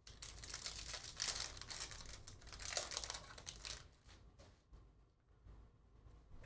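A foil trading-card pack wrapper crinkling as it is torn open, for about four seconds, then faint handling of the cards.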